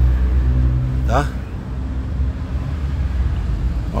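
Steady low engine hum of an idling vehicle, with a slight drop in pitch content about a second in.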